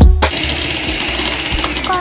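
Nikai electric hand mixer running steadily with its beaters in cake batter, a continuous motor whir that takes over just after a burst of background music cuts off.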